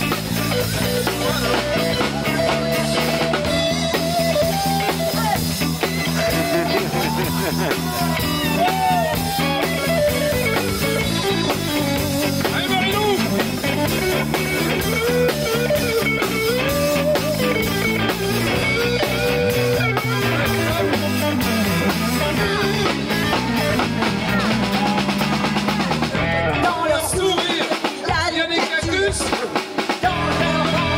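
Live band playing a song on guitars and drums. Near the end the bass and drums drop out briefly.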